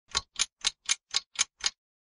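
Ticking-clock sound effect: seven short, even ticks at about four a second that stop abruptly.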